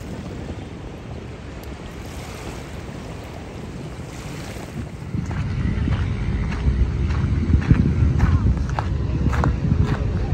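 Wind rumbling on the microphone over outdoor beach background noise. It gets louder about halfway through, and a scatter of short clicks and knocks runs through the second half.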